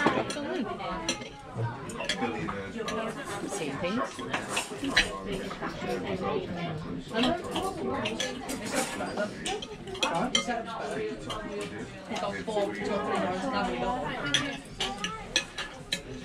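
Knife and fork clinking and scraping on a ceramic dinner plate, with many sharp clicks, over the steady chatter of a busy restaurant dining room.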